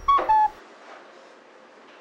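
Short two-note electronic chime in the first half-second, a higher note then a lower one, over a brief low thump; the door-entry chime sounding though the door has not opened.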